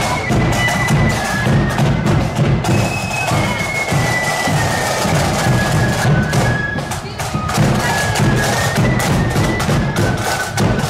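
Marching flute band playing: a high flute melody moving note to note over side drums and a bass drum beat.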